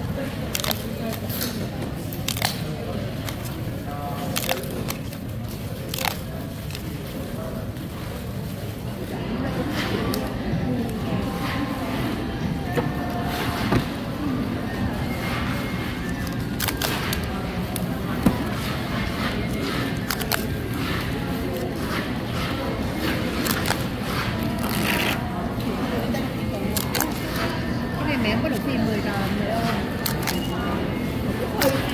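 Paper pull-tab tickets being torn open by hand, with many sharp, irregular snaps and crackles as the perforated tabs are pulled back. Under them runs a steady murmur of voices and music.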